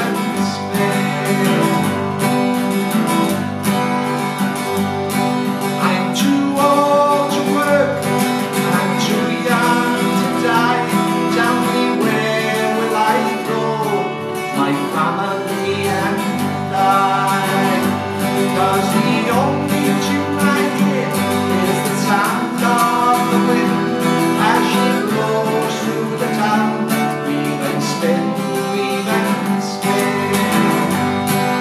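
Instrumental break of a folk song played on strummed acoustic guitar, mandolin and accordion, a wavering melody line over steady chords with no singing.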